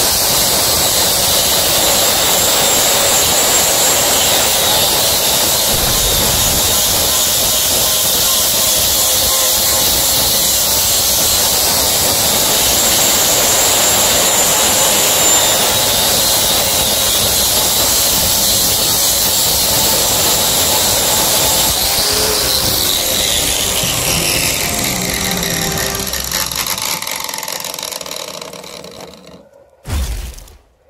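Angle grinder with a flap disc sanding a weathered wooden board, running steadily with a high whine. About three quarters of the way through it is switched off and winds down with a falling whine that fades out, followed by a short knock at the very end.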